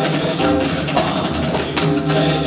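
An ensemble of tabla played together in a fast stream of sharp drum strokes over a steady held melodic accompaniment, with one strong stroke near the end.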